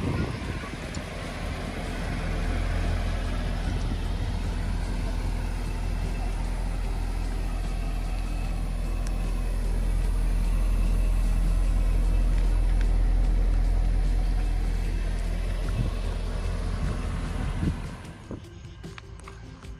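Mercedes 380SEC's 3.8-litre V8 idling steadily, a low even hum that grows louder past the middle as the rear of the car, by the exhaust, is reached.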